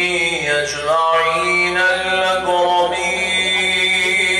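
A man's voice chanting Arabic in the slow melodic style of Quran recitation (qirat). He holds long notes that slide down and back up in pitch.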